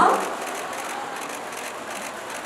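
Steady murmur of a crowded event hall with faint, quick clicks of many camera shutters, just after the MC's last word ends.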